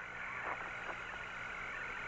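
Steady hiss and low hum of the Apollo 17 air-to-ground radio channel, with a faint steady high tone running through it.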